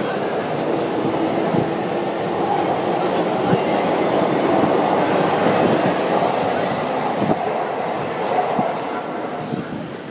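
A train running over an elevated railway viaduct: a loud, steady rumble that swells through the middle and fades near the end.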